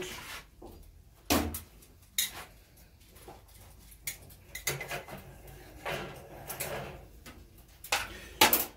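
Metal tongs clicking and clattering against a charcoal grill's metal grate, a string of separate sharp clacks and light scrapes, the loudest about a second in.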